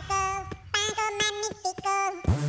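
A cartoon chick's high, childlike voice singing a quick string of short, held sung syllables.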